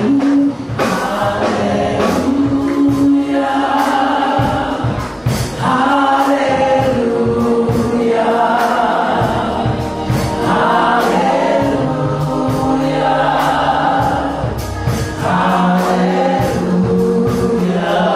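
Gospel vocal group of men and women singing live into microphones, in harmony in long held phrases, over band accompaniment with a steady beat.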